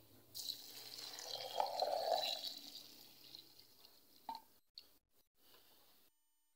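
Milk poured from a jug into a glass blender jar over chopped persimmon and sugar: a faint liquid pour lasting about two and a half seconds, then one light click.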